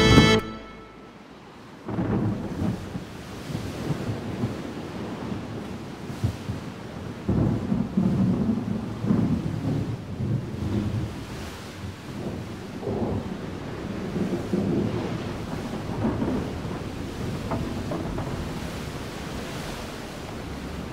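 Bagpipe music breaks off at the very start, and after a short lull a thunderstorm begins: low rolling rumbles of thunder that swell and fade irregularly over a steady hiss of rain.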